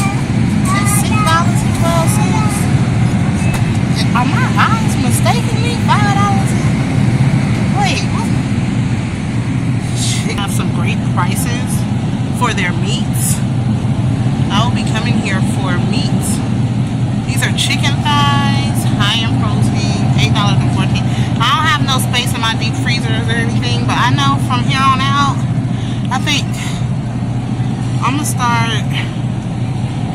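Steady low hum of refrigerated supermarket meat display cases, with indistinct voices talking on and off in the background.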